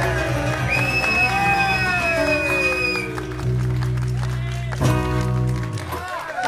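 Live acoustic band of two acoustic guitars and an electric bass ringing out a song's final chord, with a long note sliding down in pitch over the first few seconds. A last chord is struck near the end and cut off sharply.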